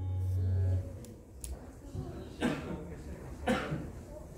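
A low, held note from the ensemble's amplified instruments cuts off sharply about a second in. In the quieter hall that follows, someone coughs twice.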